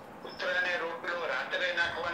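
A man speaking in a lecture, his voice carried over a webinar connection; it resumes after a short pause about half a second in.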